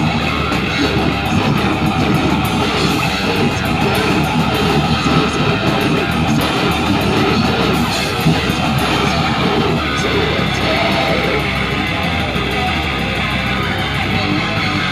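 A live band playing loud and steady on electric guitar, bass and drums.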